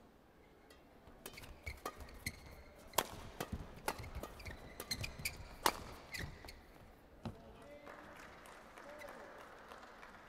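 A badminton rally: the hollow cracks of racket strings hitting a shuttlecock in a quick, irregular exchange, several hits a second, stopping about seven seconds in when the point ends.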